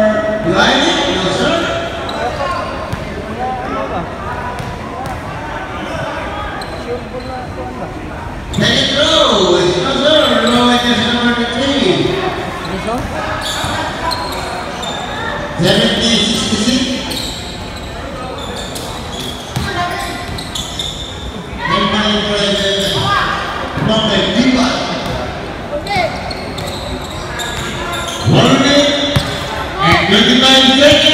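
A basketball bouncing and thudding on a hardwood court during play, with voices shouting over it in bursts, all echoing in a large gym hall.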